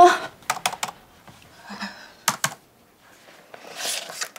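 Laptop keyboard keys clicking in two short runs: three clicks about half a second in and two more a little after two seconds. Near the end there is a soft papery rustle as a spiral desk calendar is picked up.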